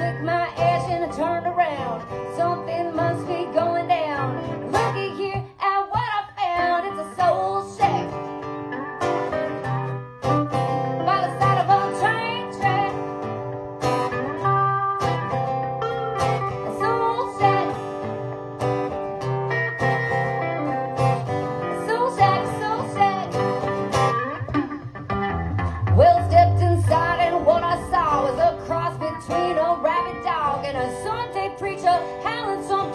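Two acoustic guitars playing a bluesy tune live, a steady instrumental passage between sung verses.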